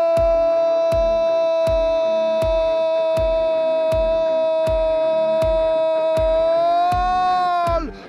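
A football commentator's drawn-out cry of "gol", one held note of about eight seconds that lifts slightly near the end and stops just before the end. Under it, background music with a steady beat.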